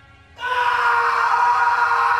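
A loud, distorted scream sound effect starts abruptly about half a second in and is held at one steady pitch over a harsh, noisy edge.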